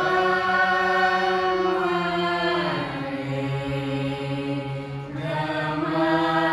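A mixed group of men and women singing a folk song together in unison, holding long drawn-out notes over a harmonium. The melody steps down to a lower held note about halfway through and rises again near the end.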